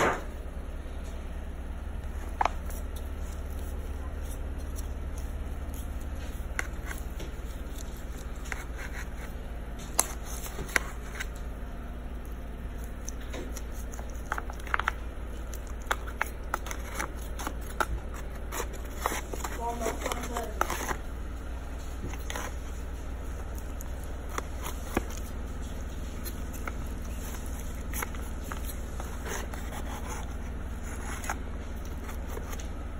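Metal spatula cutting through lasagna and scraping and tapping against a disposable aluminium foil pan: scattered short clicks and scrapes, busiest about two-thirds of the way in, over a steady low hum.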